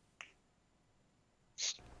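Near silence in the pause between speakers, broken by a faint click a fraction of a second in and a brief hiss shortly before the end, just before the reply starts.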